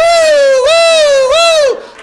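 A man vocally imitating a police siren: a high, wavering "woo" that swells and dips three times over nearly two seconds, then stops.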